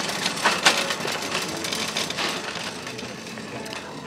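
Shopping cart with a plastic basket on a metal frame rolling and rattling over a hard store floor, with a few sharper clacks in the first second.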